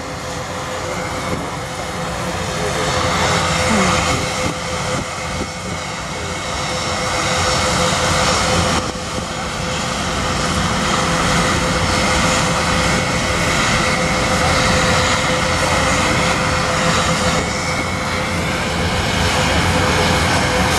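Airbus A380 airliner flying overhead in a display pass, its four turbofan engines making a continuous jet roar with a steady whining tone, growing slowly louder.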